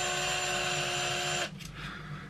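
A Ryobi drill-driver runs at a steady speed, spinning a cheap chamfer bit with a wooden stick held in it, then stops abruptly about one and a half seconds in. The bit does nothing to the wood: it is failing to chamfer.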